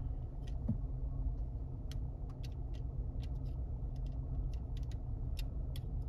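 Light plastic clicks and taps, a dozen or so scattered irregularly, as the dome light console and its bulb are handled and fitted, over a steady low rumble.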